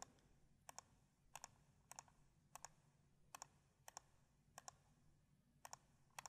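Computer mouse clicking about nine times, each a quick press-and-release pair of faint clicks, spaced roughly half a second to a second apart against near silence. Each click places a point of a mask outline.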